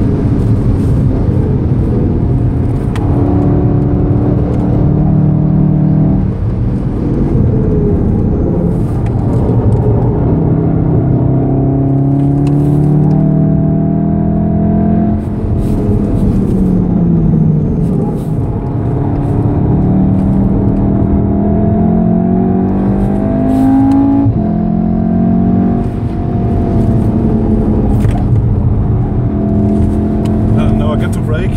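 Inside the cabin of a 2014 VW Golf VII R, its turbocharged 2.0-litre four-cylinder pulling hard at high speed over tyre and road noise. About halfway the engine note falls away as the car brakes and drops from sixth to fourth gear for a corner, then climbs again under full throttle.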